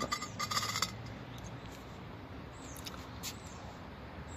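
A glass wine bottle scraping and knocking against the inside of a planter as it is worked in the pot, a brief rattle of small scrapes in the first second. After that only faint background with a few faint high ticks.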